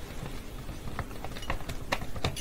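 A few light, sharp clicks of small hard objects being handled, three of them in the second half, over a faint background.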